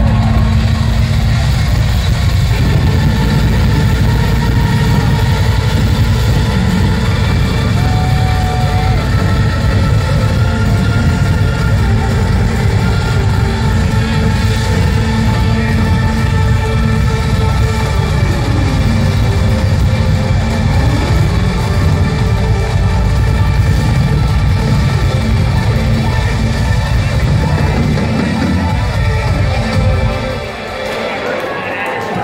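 Live industrial metal band playing loud through a club PA, heavy in the low end, with a synth or guitar tone sliding down and back up about two-thirds of the way through.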